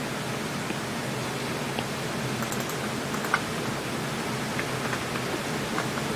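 Steady hiss from the open studio microphones, with a few faint light taps, the stylus touching a tablet screen during drawing.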